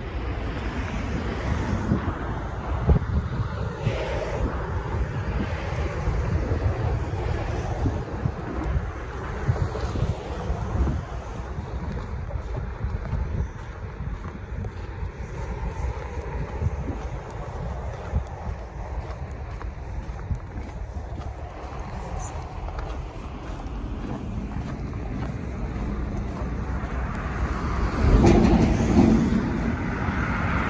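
Wind rumbling over the microphone, with road traffic on the bridge underneath it. Near the end a vehicle passes close by, making the loudest stretch.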